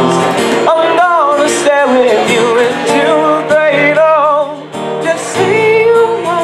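A young male voice singing a slow love song, accompanied by a strummed acoustic-electric guitar, both amplified through a PA system. The sung lines hold wavering notes, with a brief breath-break about three-quarters of the way through.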